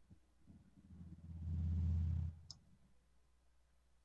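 A low rumble swells for about a second and then cuts off abruptly, followed by a single short, sharp click.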